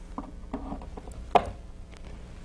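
A hospital-grade power cord plug is pushed into the power inlet of an Aaron Bovie 950 electrosurgical generator. There are faint plastic handling sounds, then one sharp click about one and a half seconds in as the plug seats.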